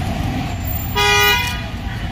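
A vehicle horn honks once about a second in: a single flat, steady note about half a second long. It sits over a steady low street rumble.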